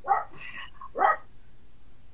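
A dog barking: two short barks about a second apart.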